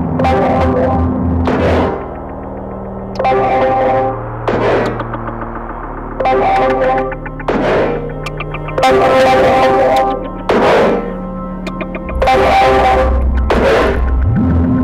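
A band playing live: distorted electric guitar and bass notes held over a low drone, with cymbal crashes about every one to two seconds.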